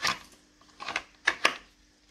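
Blue plastic dummy Glock 19 worked in and out of a Kydex holster shell: about four short, sharp clicks as the pistol snaps past the holster's retention, showing how it fits.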